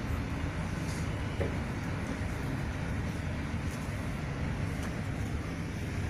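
Steady low rumbling background noise with a few faint high ticks scattered through it.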